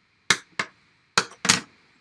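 Bone folder pressed along the fold of black cardstock to crease it: four short, sharp strokes in two pairs.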